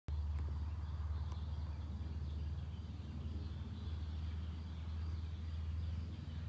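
Evening outdoor ambience: a steady low rumble with faint birds chirping now and then.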